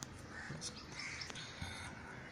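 Faint bird calls, two short calls about half a second and a second in, with a few light clicks from paper being handled.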